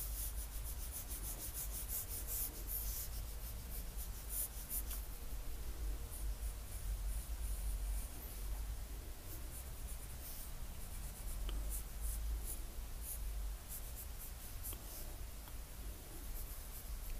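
Graphite pencil drawing on paper: a run of short scratching strokes as lines are laid down, thick in the first few seconds and more spaced out later.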